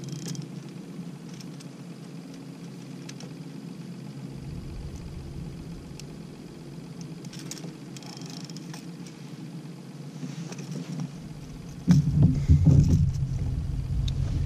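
Kayak under way with a steady low hum from its drive, and wind buffeting the microphone now and then, loudest from about twelve seconds in.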